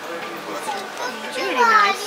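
Children's high voices calling out close by, loudest in the last half second, over a low murmur of street voices.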